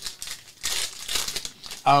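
Foil wrapper of a football trading-card pack being torn open and crinkled in the hands, a dense crackling that is loudest in the middle and stops shortly before a spoken 'oh'.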